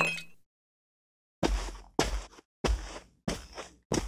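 A thud as a cardboard takeaway box is handled, then after a pause a run of heavy footsteps, about two a second, as it is carried off.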